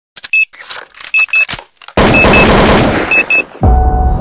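Electronic intro sound effects: a run of short clicks and pairs of high beeps, then a loud rushing noise from about two seconds in with more paired beeps, ending in a deep boom near the end.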